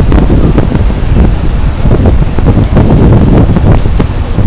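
Wind buffeting the microphone: a loud, low, uneven rumble that rises and dips.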